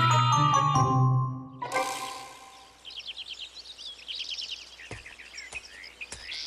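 A short title jingle with chiming mallet-percussion notes winds down and fades in the first second and a half. It gives way to a forest ambience of many small birds chirping over a soft background hiss.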